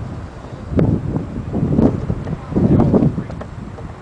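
Wind buffeting the microphone in three gusts about a second apart.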